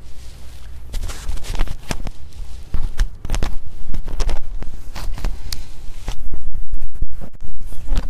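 Clothes on hangers being handled close to the microphone: a run of scratchy rustles and clicks, with a louder stretch of rubbing and scraping for about a second and a half near the end.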